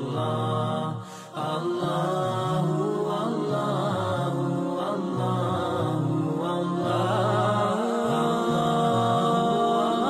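Devotional vocal music: a voice chanting in long, wavering held notes, with a brief dip in level about a second in.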